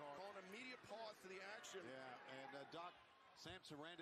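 Faint, quiet speech in the background, far below the level of the nearby talk.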